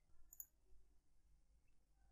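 Faint computer mouse click about half a second in, with a couple of softer ticks around it, over near silence.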